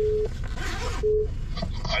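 Telephone call tone from a smartphone's loudspeaker: a steady mid-pitched beep ending just after the start, then a second short beep about a second in, as an outgoing call is put through.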